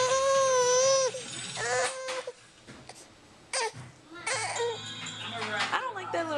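Baby fussing and crying while lying on her tummy and pushing up: a long wail of about a second at the start, then a shorter cry about two seconds in and a brief one past the middle.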